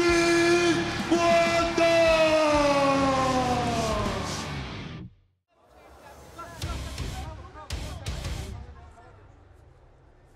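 Ring announcer's long drawn-out call of "champion", one held note slowly falling in pitch, over an echoing arena, cut off suddenly about five seconds in. Then comes quieter arena noise with a few short sharp hits.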